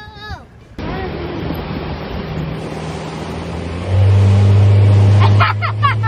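Motorboat engine running under way, with wind and water rushing past. About four seconds in the engine's drone grows much louder as it is throttled up. A boy yells near the end.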